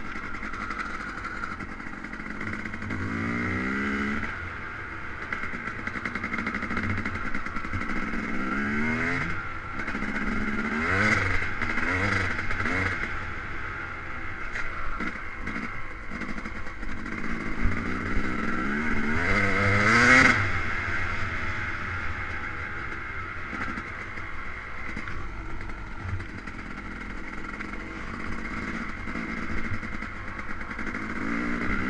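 Yamaha YZ250 two-stroke dirt bike engine, heard on board while riding, revving up and easing off several times. The loudest rise comes about two-thirds of the way through.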